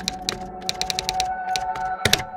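Typing sound effect: a quick, uneven run of sharp key clicks over a sustained ambient music drone.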